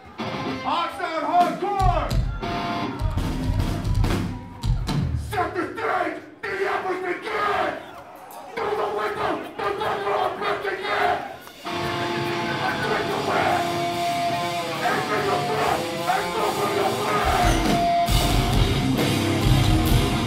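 Hardcore band playing live in a club: shouted vocals over sparse drum and bass hits, then sustained ringing guitar from about halfway, with the full band coming in heavily near the end.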